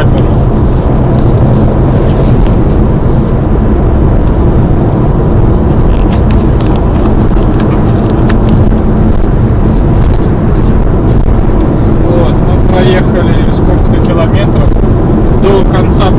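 Steady road and engine noise inside a car's cabin while it drives along a motorway.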